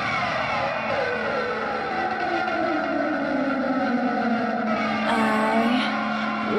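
Hard-rock song intro: a dense, distorted electric-guitar wash whose pitches keep sliding downward, with a steady low tone coming in about halfway through.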